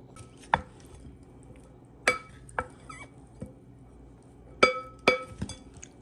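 A wooden spoon knocking against the side of a mixing bowl while tossing pasta salad: about six separate clinks, each with a short ring, the loudest about two seconds in and just before five seconds.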